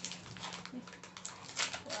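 Foil snack pouch crinkling and crackling as it is torn open by hand, in a quick run of sharp crackles.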